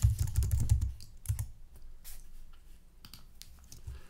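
Typing on a computer keyboard: a quick run of keystrokes in the first second and a half, then a few scattered key presses.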